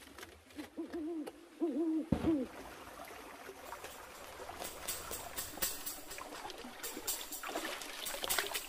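A low hooting call of a few wavering notes, the last sliding down, lasting about two seconds near the start. Then wet gravel is scraped and brushed along a metal sluice box with water trickling, with scattered clicks of small stones.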